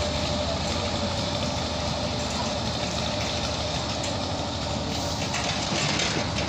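A boat's engine running steadily at low speed, an even mechanical drone with a low hum.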